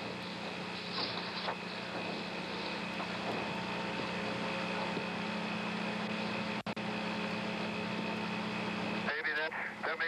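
Open air-to-ground radio channel from Apollo 10: steady static hiss with a constant low hum and faint steady tones. The signal drops out briefly about two-thirds through, and a voice breaks in near the end.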